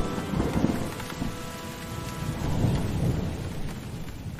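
Thunderstorm sound effect: thunder rumbling in slow rolls over steady rain, with faint lingering musical tones that fade away.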